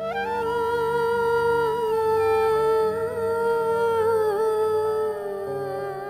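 Background film music: a wordless humming voice holds one long note over a low accompaniment, its pitch dipping slightly a few seconds in, with shorter keyboard-like notes entering near the end.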